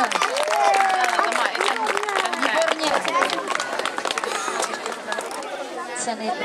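Several spectators' voices calling out over one another, their pitches rising and falling.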